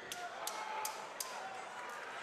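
Four sharp slaps, about 0.4 s apart, over faint shouting from the crowd and corners in an arena during an MMA grappling exchange.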